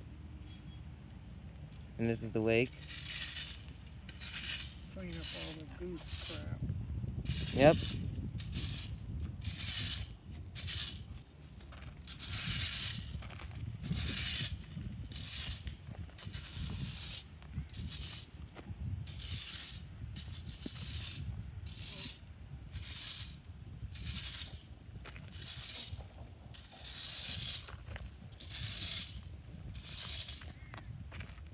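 Metal fan rake with spring-steel tines scraping across gravel and grit in a steady series of strokes, about one a second. Near the start there are a few brief pitched sounds, the loudest a short rising squeal about eight seconds in.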